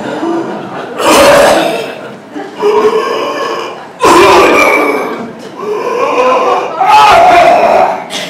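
Loud, strained vocal sounds from a speaker close to the microphone, in four bursts of one to two seconds each. They act out someone smoking several cigarettes at once.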